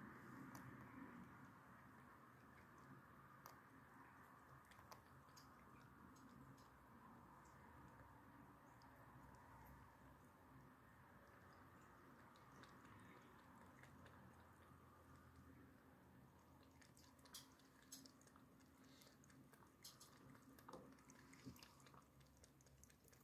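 Very faint lapping of a cat's tongue in a bowl of milk: sparse soft little clicks, growing more frequent near the end, over a steady low room hum.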